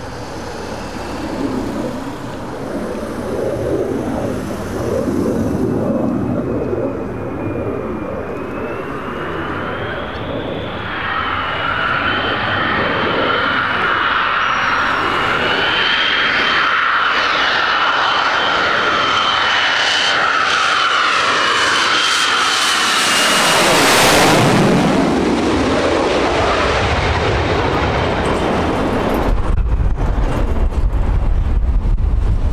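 Lockheed Martin F-22 Raptor's twin turbofan engines on landing approach. A rough distant jet roar gives way to a high, wavering engine whine that grows as the jet closes in. It peaks as a rushing sweep when the jet passes overhead about 24 seconds in, then the sound falls away.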